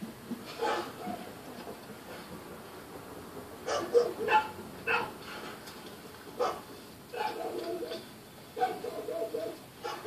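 A dog barking several times in short, sharp calls, with longer runs of barking near the end, heard through a television speaker.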